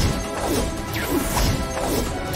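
Dramatic background music score with sharp percussive hits and falling whooshes, about two a second.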